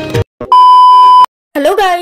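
A loud, steady electronic beep, a single pure tone lasting about three-quarters of a second and cut off sharply, set between brief silences just after guitar music ends. A woman starts speaking near the end.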